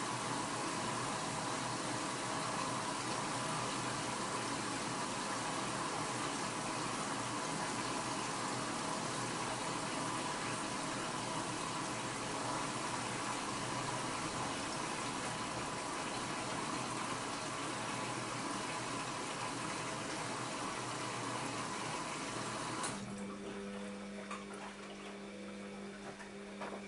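Bosch WAB28220 washing machine taking in water: a steady rush of inflowing water that cuts off suddenly a few seconds before the end as the inlet stops. A steady hum and a few light clicks follow as the drum starts turning the laundry.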